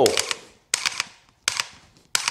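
Dry-fire trigger pulls on an AR pistol fitted with a Mantis Blackbeard, which resets the trigger after each press. Sharp mechanical clicks come in quick groups of a few, about three groups in succession.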